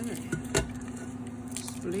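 Thick cooked split peas and soup bones tipped from a metal pot into a stainless stockpot of soup: a soft wet squish with a sharp metal knock about half a second in, over a steady low hum.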